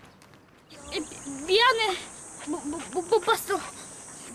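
A steady, high-pitched insect buzz starts about a second in and carries on, with short bursts of young voices calling over it.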